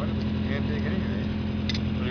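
An engine idling with a steady low drone that holds one pitch throughout.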